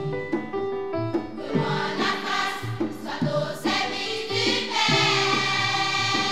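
Children's church choir singing together over instrumental accompaniment with a steady bass line; the voices come in about a second and a half in, after a short instrumental passage.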